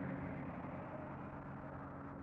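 Steady low hum over an even background noise, with no speech.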